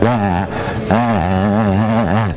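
A man's silly mock-menacing vocal noise, made with his tongue stuck out: a short swooping cry, then from about a second in a long held note that wavers quickly up and down, a put-on noise to unsettle a batsman.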